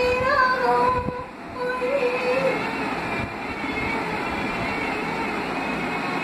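A woman's singing voice holding a long, gently wavering note that ends about two and a half seconds in, followed by steady background noise.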